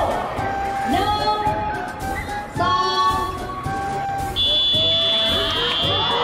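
Music and a drawn-out announcer's voice over a hall's public-address system, with held notes. About four seconds in, a steady high-pitched tone joins and holds.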